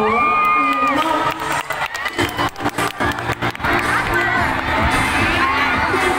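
A crowd of children cheering and shouting over music, with a quick run of sharp hits about two seconds in.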